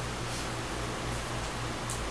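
Steady room tone: an even hiss over a low steady hum, with a brief faint rustle near the end.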